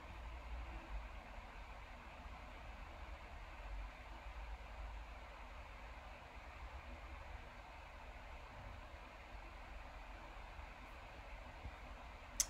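Faint steady hiss with a low rumble underneath, with no distinct sound events: room tone.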